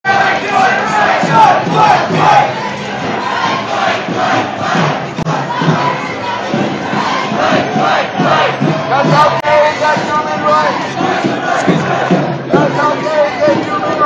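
A marching crowd of protesters chanting and shouting together, many voices overlapping in a repeated cadence.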